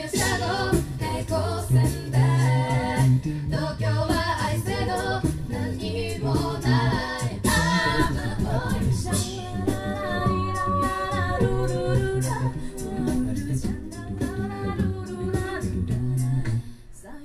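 A mixed a cappella vocal group singing live into microphones: several voices in harmony over a sung bass line, with short percussive sounds keeping time.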